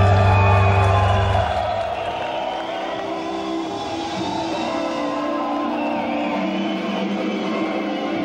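Live rockabilly band playing an instrumental passage with no singing: upright bass, electric guitar and accordion. A deep low note drops away about a second and a half in, and steady held chords carry on.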